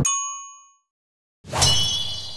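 Edited-in chime sound effects: a short bell-like ding rings out and fades as the car sound cuts off. After a brief silence, a quick swell leads into a bright, shimmering metallic chime that rings and slowly dies away.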